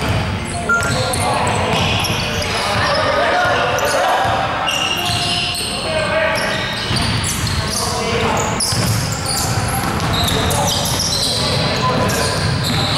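A basketball being dribbled and passed on a hardwood gym floor, with short high squeaks of sneakers and indistinct shouts of players echoing through a large hall.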